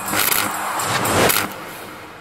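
Logo sound effect: two noisy swells with a bright metallic shimmer, the second followed by a steady fade-out.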